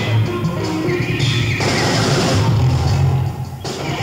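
Jazz-fusion band playing loudly in a live concert, with a wavering sustained lead note over a heavy low end.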